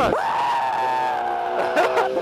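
A person's long high-pitched scream, shooting up at the start, then held for nearly two seconds while sliding slowly down in pitch.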